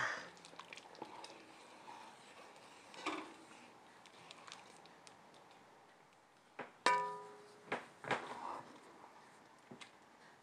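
A spoon stirring thick chili in an enamelled cast iron pot, mostly faint, with a few sharp knocks about seven seconds in; one of them rings briefly like a tap on the pot's rim.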